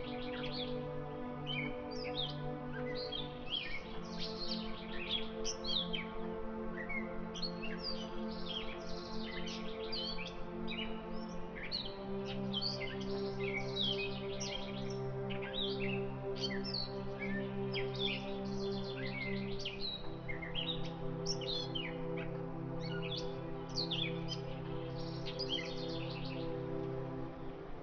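Slow ambient background music of held chords that change every eight seconds or so, with birds chirping busily throughout.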